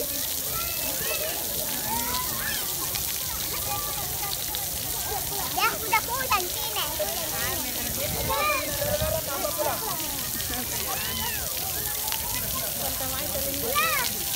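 Steady hiss of fountain water jets spraying onto a paved splash pad, with many people's voices and high calls over it, loudest about six seconds in.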